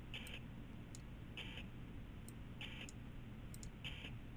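Faint, short high-pitched buzz from the Yaskawa Sigma-7 servo motor on the demo's Z axis, coming back about every 1.3 seconds as the axis repeats its move, each with a faint tick just before it. The motor is tuned aggressively for low position error, with a notch filter damping its vibration.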